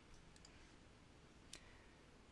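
Near silence, with one faint computer mouse click about one and a half seconds in.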